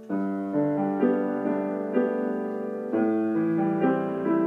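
Piano playing a slow thanksgiving hymn arrangement. A new phrase starts right at the beginning with a struck chord, and notes and chords follow about every half second to second, each ringing on as it fades.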